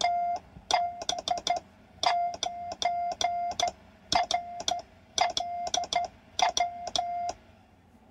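Morse code (CW) keyed by hand on a paddle: one steady mid-pitched tone broken into short and long elements, with a sharp click at each keying. The sending stops about seven seconds in.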